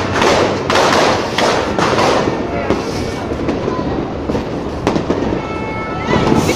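Fireworks and firecrackers going off in a dense, continuous run of bangs and crackles.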